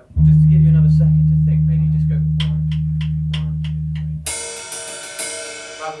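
A low bass guitar note struck hard and left to ring, slowly fading, with a run of light, evenly spaced ticks from the drum kit over its second half. About four seconds in the bass note is cut off and a cymbal crash rings out, with a few more ticks.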